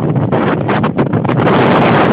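Strong wind buffeting the microphone in an irregular, fluttering rush as a working windmill's sails sweep past close by.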